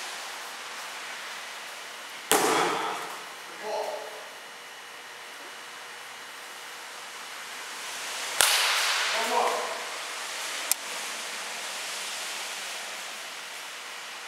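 A baseball bat hitting a pitched ball twice, about six seconds apart, each sharp crack trailing off briefly. A lighter click follows a couple of seconds after the second hit.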